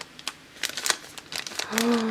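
Striped paper bag crinkling and crackling in a run of small irregular crackles as a sticker is pressed and rubbed flat onto it with fingertips. A short hummed voice sound comes near the end.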